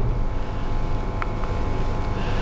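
Steady low rumble with a faint steady hum above it, and a faint click about a second in.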